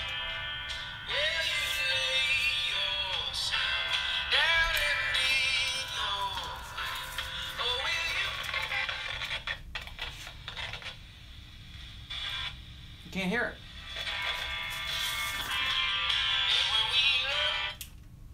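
Small portable FM radio playing a station's music with singing through its little speaker, thin-sounding, dipping quieter for a couple of seconds a little past halfway.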